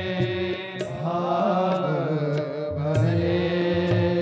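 Indian devotional bhajan music in a passage between sung lines: sustained pitched accompaniment under a gliding melody line, with light percussion strikes.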